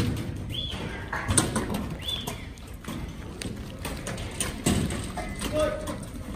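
Sheep moving about in a yard: scattered hoof clatter and knocks throughout, with a short call near the end.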